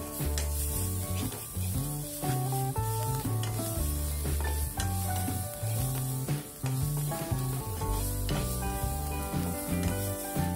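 Chopped onion and tomato masala sizzling in oil in a kadai, a spatula scraping and tapping the pan again and again as it is stirred. Background music with a bass line plays throughout.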